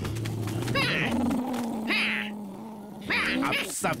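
Voiced cartoon animal growling: a held low growl with three short snarls about a second apart, from the animated tiger and wolves squaring off.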